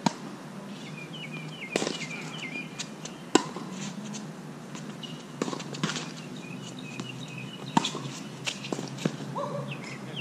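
Tennis balls struck by rackets during a rally on a hard court: sharp, ringing hits every second or two, the nearest ones loudest, with softer ball bounces and shoe scuffs between them.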